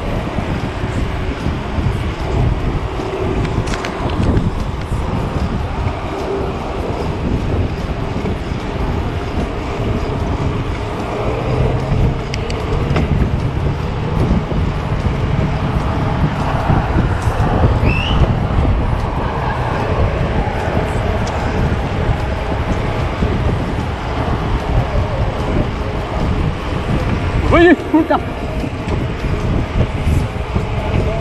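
Steady wind buffeting the microphone and road rumble from a road bicycle riding along at speed in a group of cyclists.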